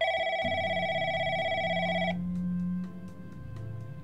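Desk telephone ringing: one ring about two seconds long with a fast trill that cuts off suddenly, over soft background music.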